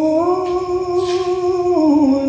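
A man's voice holding one long sung note of a ghazal. It steps slightly up in pitch just after it begins and slides back down near the end.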